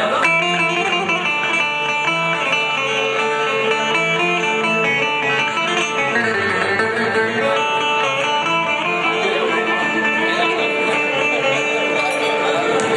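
Instrumental passage on a plucked string instrument, playing a melody over a steady held note, within an Urfa uzun hava folk song.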